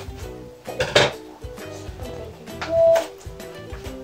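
Background music playing, over the clinks and clatter of small plastic toys and packaging being handled on a table, loudest about a second in.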